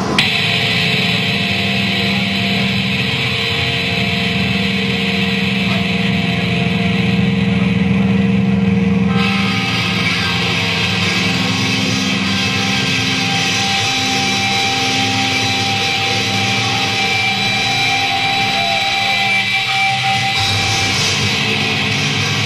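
A death metal band playing live at loud club volume, distorted guitars holding long sustained notes with no clear drum pattern. The sound shifts about nine seconds in.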